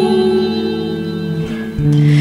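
Electric guitar, a Les Paul-style solid-body with a capo, letting a chord ring out and fade with reverb, then a new chord struck near the end.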